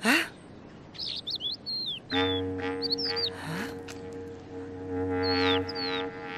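Small birds chirping in quick, high, gliding notes, with a held chord of background music coming in about two seconds in and sustaining.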